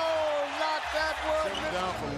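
A sports commentator's long, held "oh" of excitement after a dunk, falling slightly in pitch and trailing off about a second in. It is followed by short bits of voice over arena crowd noise.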